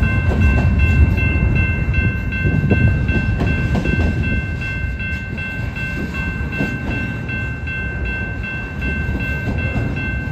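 A double-stack intermodal freight train rolling past: a steady low rumble with scattered clanks from the wheels and cars. Steady high-pitched ringing tones run over it. It is loudest about a second in and eases a little after the middle.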